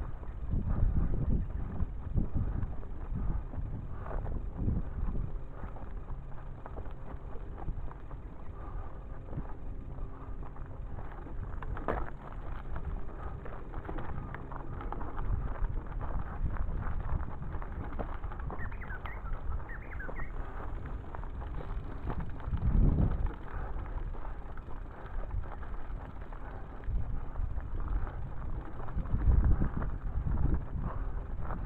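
Wind rumbling on a handheld action-camera microphone as a bicycle rolls along, with tyre and frame noise over road and then a dirt track. It gusts louder about a second in, a little before two-thirds of the way through and near the end, with a sharp knock about twelve seconds in.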